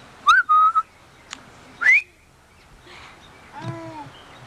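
A person whistling: a short whistle that rises and holds its note, then a second whistle that glides sharply upward about two seconds in. A brief voice-like call with a falling pitch follows near the end.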